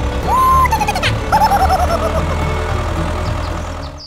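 Background music with a steady low beat and a high wavering melody, dropping off at the very end.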